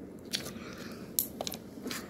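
Homemade slime squeezed and worked between the hands, giving a few short clicks and crackles.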